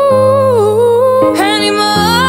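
Female voice singing a long held note that wavers and dips, then climbs into a higher phrase about two-thirds of the way through, over sustained grand piano chords.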